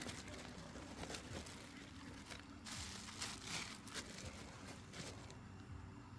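Camping-cot parts being handled and unpacked: scattered rustling of the cloth and carry bag, with a few light clicks of the aluminium poles.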